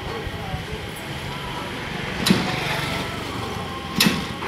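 Street noise: motor vehicles running and people talking in the background, with one sharp knock about two seconds in.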